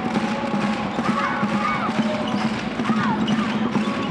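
A basketball dribbled on a hardwood court, with short sneaker squeaks scattered through and a low steady arena hum underneath.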